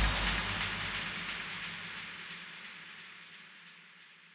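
The reverb and delay tail of an electronic dance track after the music stops, a fading wash with faint repeating echo ticks that dies away steadily over about four seconds.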